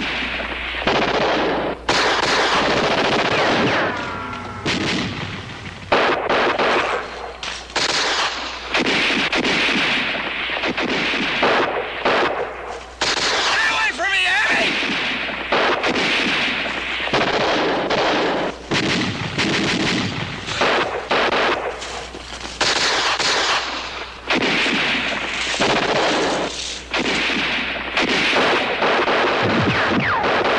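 Heavy, near-continuous gunfire: overlapping rifle shots and machine-gun bursts with hardly a pause.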